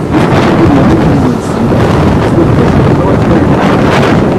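Engine and gravel-road rumble heard from inside a large tour vehicle as it drives uphill, loud and steady, with wind buffeting the microphone.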